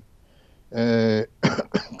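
A man's voice: after a short pause, a held hesitation sound, a flat 'eee' lasting about half a second, and then his speech resumes near the end.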